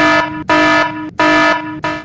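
Electronic alert sound effect: a buzzy, steady-pitched beep repeating about one and a half times a second.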